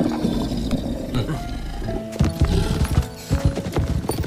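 Background score music over the footfalls of a column of armoured tiger mounts on a wooden plank bridge. The steps become a dense run of heavy thuds from about two seconds in.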